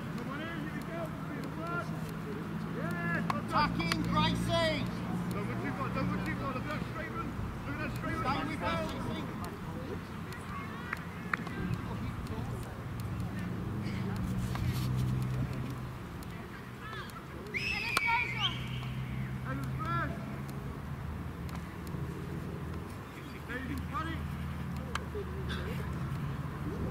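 Scattered shouts and calls of young players across a soccer pitch, short bursts of voice heard at a distance, with a louder call about eighteen seconds in, over a low steady hum.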